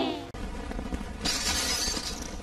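The last notes of a film song slide downward and cut off. About a second later comes a bright shattering crash with a high ringing, typical of glass breaking, in an old film soundtrack.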